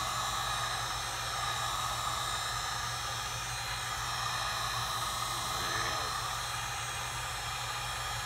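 Heat gun running steadily on low heat, a constant blowing hiss with a low hum underneath.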